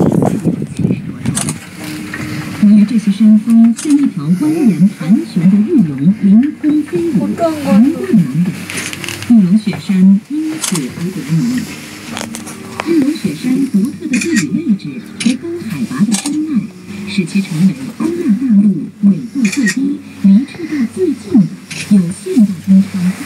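Indistinct, low-pitched voices talking throughout, muffled so that no words can be made out.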